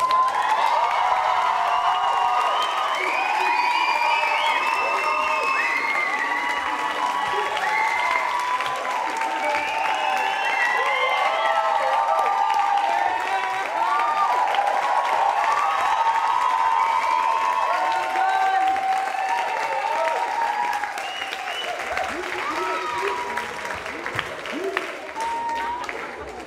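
Audience applauding, with whoops and cheers from many voices. It breaks out suddenly and stays loud, then dies away near the end.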